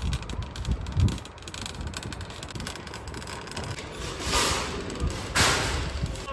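A plastic shopping cart rattling as it rolls over concrete pavement, with low wind rumble on the microphone and two louder rushes of hiss in the second half.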